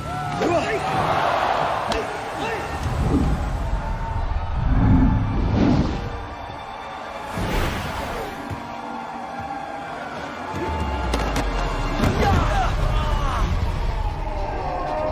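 Martial-arts fight sound mix: sudden hits and a whoosh from blows, kicks and a flip, with shouts from the fighters and onlookers, over dramatic score music.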